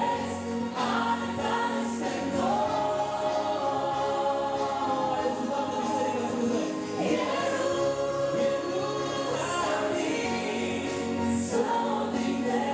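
A woman and a man singing a Romanian Christian song together, with electronic keyboard accompaniment and several long held notes.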